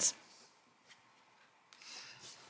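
Cardstock cards rubbing and sliding against one another as they are moved by hand. A faint papery rustle starts near the end, after a near-silent pause.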